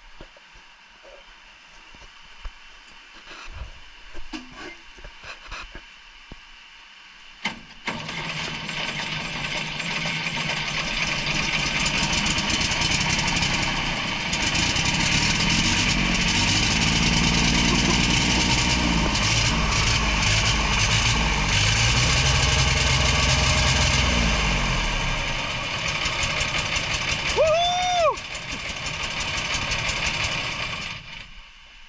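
Engine of a mountain cable winch starting about eight seconds in, after a few faint clicks, then running loud, its pitch rising and falling as it is revved before easing off near the end. A short tone that rises and falls comes near the end.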